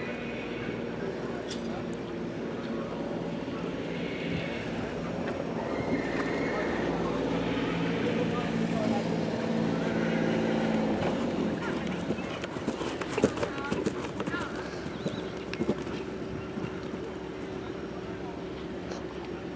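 A horse cantering and jumping on a grass arena, its hoofbeats heard over steady background voices. A low steady hum runs under it and stops about eleven seconds in, followed by a run of sharp knocks.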